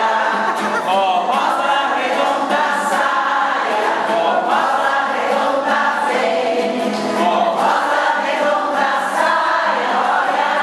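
A group of older women singing a Portuguese folk round-dance song together in chorus, in a continuous, steady flow of voices.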